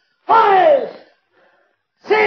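A single loud human cry, falling in pitch, starting about a quarter second in and dying away within a second.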